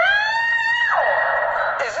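A voice swooping up to a high held note, holding it for under a second and then dropping away.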